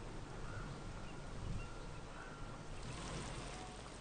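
Steady outdoor lakeside ambience: an even hiss of water and wind with a low rumble underneath, thinning slightly near the end.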